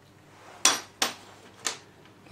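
Three sharp metallic taps on the cast steering box of an early Land Rover Series One, each with a short ring, to loosen its top cover. The second tap follows the first closely, and the third comes a little later.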